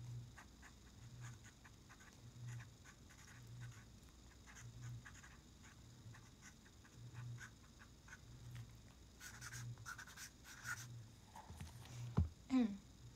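Faint scratching of a felt-tip marker writing on a paper memo pad, in many short strokes that grow a little louder about nine seconds in.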